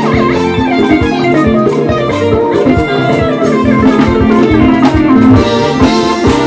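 Live band playing an instrumental passage: an electric guitar picking a running melody over drums and a steady low bass line.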